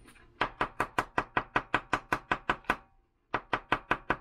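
Fast, even knocking, about six sharp raps a second, with a brief stop near three seconds before a second run. The source is a LaserMax laser guide rod being rapped repeatedly to jar loose a pack of small 377 batteries stuck in it by corrosion; the jarring shakes out only oil.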